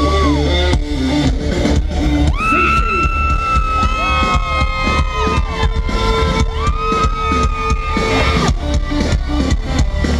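Live country-rock band playing loudly through a festival PA, heard from the crowd: an electric guitar solo of long, sustained notes bent up into pitch, over bass and drums.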